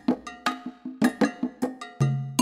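Instrumental background music: a quick rhythm of struck, ringing, bell-like percussion notes, a few hits a second, over occasional low bass notes.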